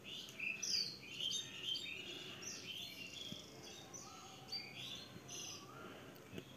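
Small birds chirping nearby: a quick string of short whistled and sweeping notes, rather faint.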